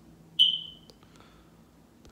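A single short, high-pitched ding about half a second in that fades within about half a second, followed by two faint clicks.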